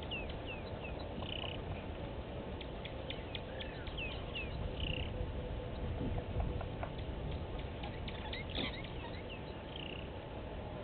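Outdoor bush ambience: birds giving short chirps that fall in pitch, scattered through the clip, over a steady low rumble.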